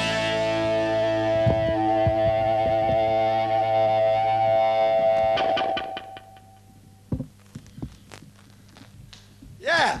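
A live rock band's closing chord: a distorted electric guitar holds one ringing chord while the drums hit a few times. It cuts off about five and a half seconds in, and after that only a few scattered knocks are heard.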